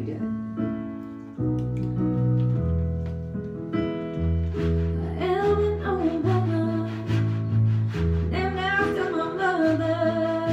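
Keyboard and djembe playing the song's intro: sustained electric-keyboard chords over a moving bass line, with steady hand-drum taps. A woman starts singing about five seconds in.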